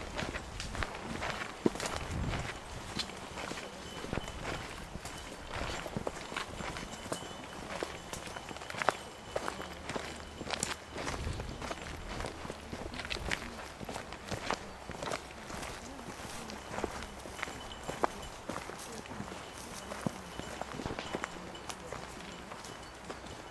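Footsteps of people walking on a dirt trail: a run of irregular, sharp steps on soil and small stones.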